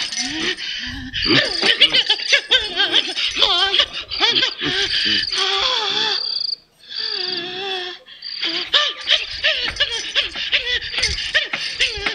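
Laughter, the voices wavering quickly up and down, over a high chirping that repeats in short spells; the sound drops away briefly about six and a half seconds in.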